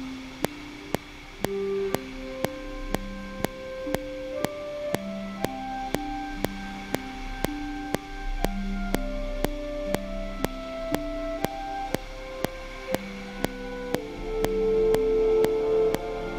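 Sampled orchestral instruments playing from computer music software, with sustained chords under a slowly moving line of held notes, while a new part is played in on a MIDI keyboard. A metronome click sounds about twice a second throughout. The chords swell louder near the end.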